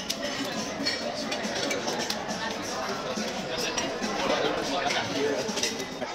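Indistinct background chatter of diners in a busy restaurant, with occasional clinks of plates and cutlery.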